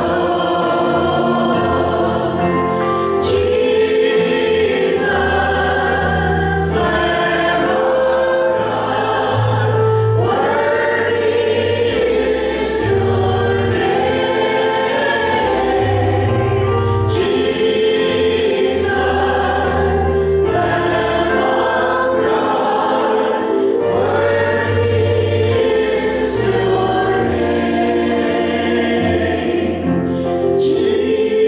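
Several voices singing a slow worship song together in harmony over instrumental accompaniment with a low bass line.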